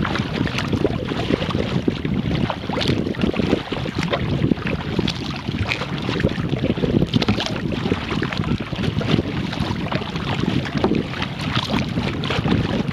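Wind rumbling on the camera's microphone over water lapping and splashing against a moving canoe, with many small irregular splashes and crackles throughout.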